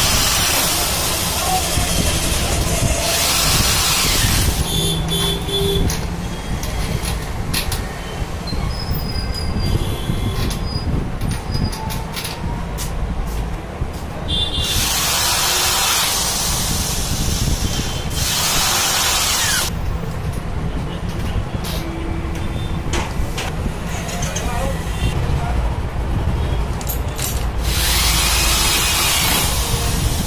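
Corded electric drill running in short bursts of one to two seconds, about five times, as it works screws into an aluminium window sash frame. Between the bursts come light clicks and knocks of metal parts being handled.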